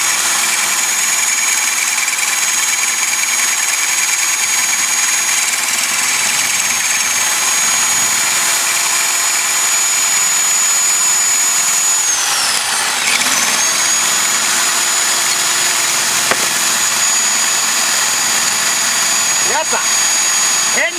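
Hammer drill with a half-inch masonry bit boring into a concrete wall, running steadily under load. Its high motor whine dips in pitch about twelve seconds in, then comes back up.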